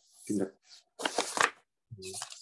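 Brief indistinct voice sounds, with a short noisy burst about a second in.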